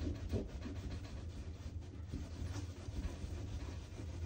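Damp cotton washcloth rubbing soaked paper off a smooth gesso panel: soft, irregular scrubbing strokes, over a steady low hum.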